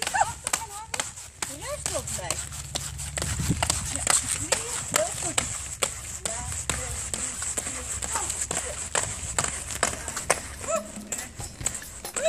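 Several people running and bouncing in spring-loaded rebound boots, the boots landing on hard-packed ground in a fast, irregular clatter of sharp clacks.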